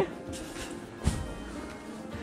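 A hay bale dropped onto the barn floor: one dull thump about a second in, over faint background music.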